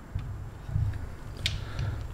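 Low handling noise from a solar panel and its coiled cables being held up and moved in the hands, with one small click about one and a half seconds in.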